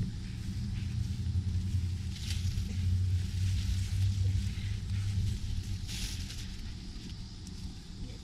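A low, steady engine hum fades out after about six and a half seconds, with brief rustles of leaves and twigs as a person breaks a branch from a bush.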